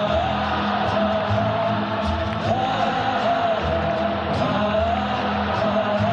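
Live concert music: many voices singing a slow melody together in unison over acoustic guitar and band accompaniment, steady throughout.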